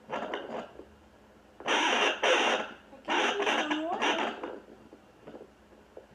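Handheld home fetal Doppler's speaker giving three loud, irregular bursts of scratchy whooshing static with a few sliding tones as the probe is moved over the lower belly. This is probe-movement noise, not a steady heartbeat rhythm.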